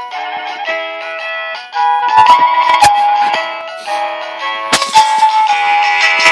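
A musical cake server toy's electronic sound chip playing a simple melody, one pitched note after another. A few sharp knocks from the plastic server being handled cut across it.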